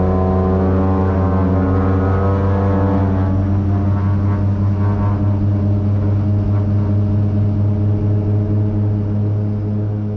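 Cabin drone of a DHC-6-400 Twin Otter's two Pratt & Whitney PT6A turboprops at takeoff power during the takeoff roll, heard from a window seat beside the left engine. It is a loud, steady, deep propeller hum with higher overtones, easing slightly near the end.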